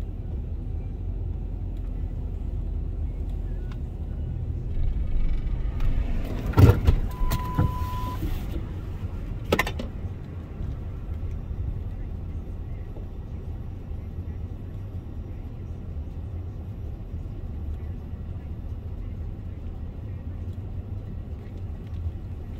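Low steady rumble of a stationary car's engine idling, heard from inside the vehicle. About six and a half seconds in there is a sharp click, then a short steady beep, then another click a few seconds later.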